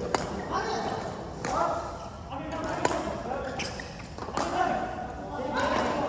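Badminton rackets striking shuttlecocks: several sharp cracks at irregular intervals, the loudest just after the start and nearly three seconds in. Players' voices carry through the echoing sports hall.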